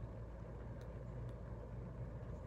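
Steady low outdoor rumble with no clear source, and a couple of faint ticks a little under a second in and again about a second later.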